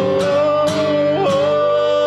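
Male voices singing long held notes over two acoustic guitars strummed in a steady rhythm.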